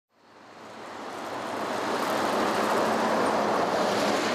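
Road traffic noise from a bus coming along the road: a steady rush of engine and tyre noise that fades in and grows louder over the first two seconds, then holds.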